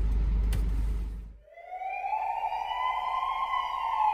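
A steady low rumble for about the first second, cut off short, then a siren wail that rises slowly in pitch and begins to fall again near the end.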